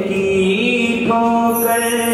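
Devotional bhajan sung in a chanting style, the voice holding long, steady notes; a new held note comes in just after a second in.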